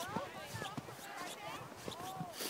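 Faint distant voices of people calling and chattering, with no clear words, plus a few light ticks.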